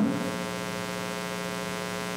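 Steady electrical mains hum with a buzzy edge, an unchanging drone.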